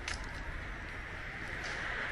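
Steady background noise of a quiet city street with distant traffic, with a few faint ticks and no clear single event.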